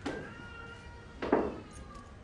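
Two dull thuds about a second and a half apart, each with a short room echo, with faint thin high tones between them.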